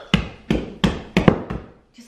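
Oiled hands punching down risen yeast bread dough in a large stainless steel mixing bowl after its first rise: about six quick thumps in under two seconds, each followed by a short ring.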